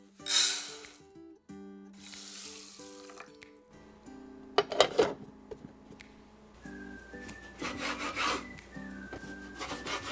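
Dry rice poured into an aluminium mess tin, a loud brief hiss of grains against the metal, followed by a softer pour. About five seconds in come a few sharp clinks as the aluminium lid is set on. In the last few seconds a kitchen knife cuts chicken thigh on a bamboo cutting board with repeated scraping strokes.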